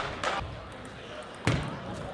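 Sharp knocks of a celluloid table tennis ball, a few near the start and the loudest about a second and a half in, each with a short hall echo.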